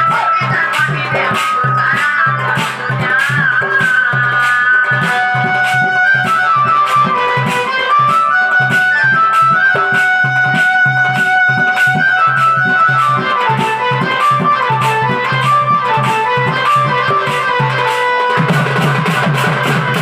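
Live folk music: an electronic keyboard plays a winding melody over a steady low held note, with hand-played drum strokes in a regular rhythm. The low note drops out near the end.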